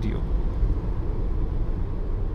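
Steady low road and tyre rumble inside the cabin of a moving Renault Zoe electric car.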